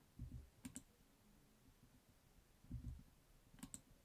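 Faint computer mouse clicks: one just under a second in and a quick pair near the end, with a couple of soft low thuds between, over near silence.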